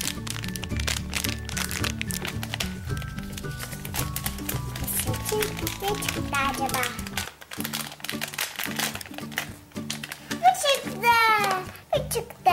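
Crinkling of a foil blind-bag wrapper being torn open and handled, over background music with a steady repeating beat. Near the end a short gliding, voice-like sound is loudest.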